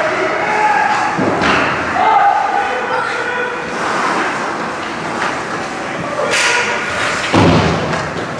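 Thuds of the puck and players hitting the boards and glass of an ice hockey rink, echoing in the arena: one about a second in and a louder one near the end, over voices from the stands.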